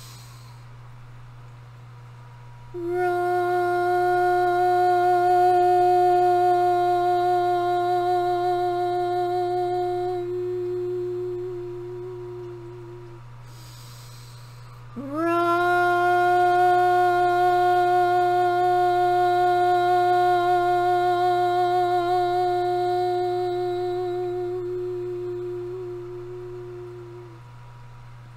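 A woman's vocal toning: two long sustained notes on the same steady pitch, each about ten seconds long, with a breath taken between them; the second note slides up into pitch as it starts. The toning is breath work meant to release energetic blockages from the sacral chakra.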